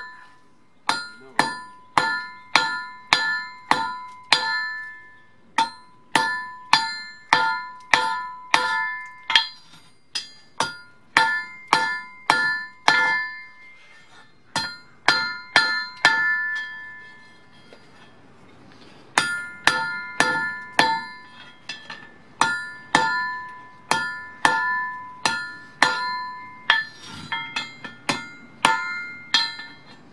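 Hand hammer striking red-hot O1 drill rod on a thick steel-disc anvil, drawing the bar out, about two blows a second. Each blow rings with a bright metallic ring. The blows stop for about five seconds around the middle, then resume at the same pace.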